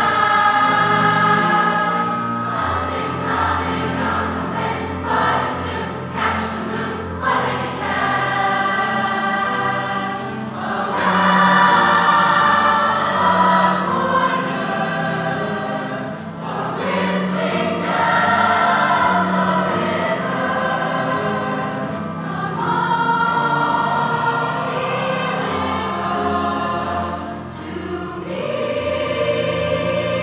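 Large mixed high-school choir singing in harmony with grand piano accompaniment, the phrases swelling and easing in loudness.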